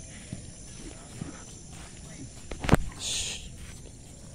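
Faint thuds of a horse's hooves on grass over a quiet outdoor background. A single sharp knock comes a little past halfway, followed at once by a brief breathy hiss.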